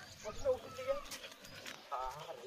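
Talking in high-pitched voices, with short calls in the first second and a few faint clicks afterwards.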